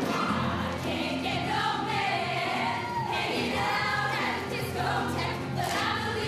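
Show choir of mixed voices singing together over instrumental backing, with steady low bass notes underneath the sung melody.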